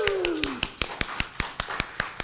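Hands clapping steadily and evenly, about five claps a second, close to the microphone, over faint applause, opening with a short falling vocal cheer.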